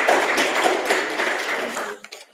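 Audience applause, many hands clapping steadily, that cuts off suddenly at the end.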